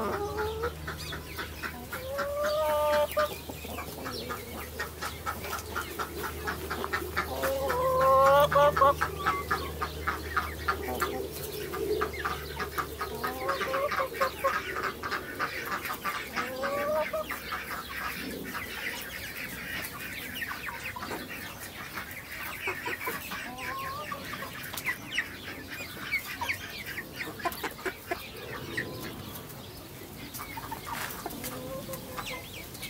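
Chickens clucking and calling, with a run of short rising calls; the loudest comes about eight seconds in. A low steady hum is heard under the first half.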